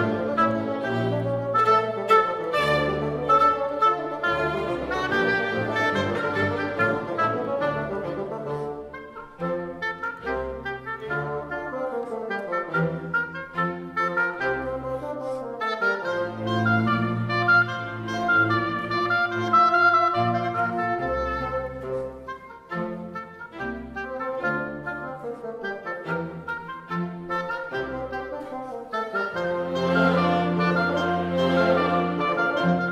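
Classical-era symphonie concertante played by solo oboe and bassoon with chamber orchestra. The music drops to a quieter passage about a third of the way in and swells again just past the middle.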